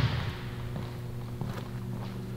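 The echo of a basketball bounce dying away in a large gym, then a steady low hum with a few faint taps as a free throw is set up and shot.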